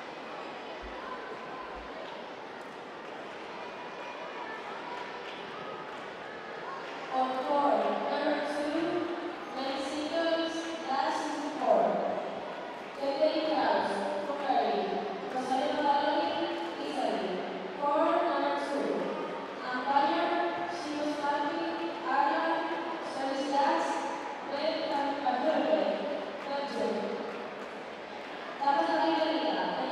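Steady murmur of a large indoor hall, then a person talking almost without pause from about seven seconds in.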